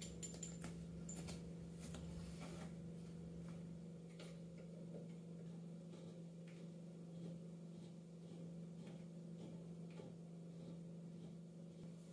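Faint scattered clicks and taps of hands handling a bidet T-valve and fitting it onto a toilet's water supply connection, over a steady low hum.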